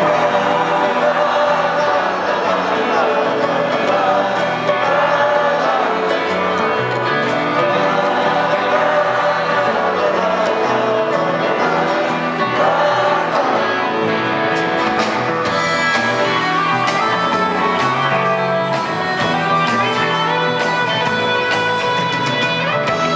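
Live folk-rock band performing: sung vocals in harmony over strummed acoustic guitar, electric guitar and drums.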